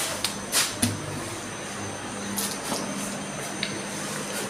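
A person eating a ripe mango close to the microphone: a few short mouth noises of biting and chewing over a steady low hum.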